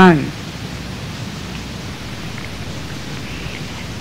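A steady hiss of background recording noise in a pause of a man's speech, just after a word trails off at the start.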